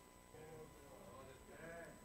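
Near silence: room tone with a couple of faint, short voice-like sounds in the room and a faint steady high tone.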